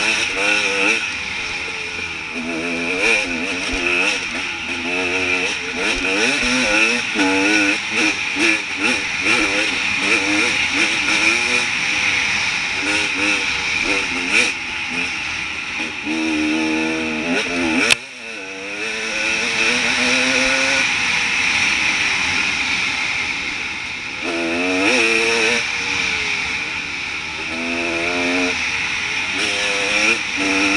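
Enduro dirt bike engine heard onboard, its pitch rising and falling as the throttle is worked over the trail, over a steady hiss. About two-thirds of the way through there is a sharp click and the sound drops for a moment before the engine picks up again.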